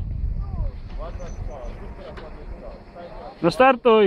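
Mostly voices: people talking and calling out, with a loud shout near the end, over a low rumble that fades away after the first second or so.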